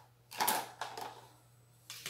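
Short clatter of plastic kitchenware being handled: a quick cluster of clicks and knocks about half a second in, a few lighter clicks after, then quiet until more clicking near the end.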